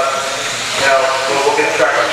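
A man's voice calling the race over a steady hiss.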